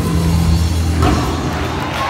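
A live gospel band plays a held chord over a steady bass line. The chord breaks off about a second in.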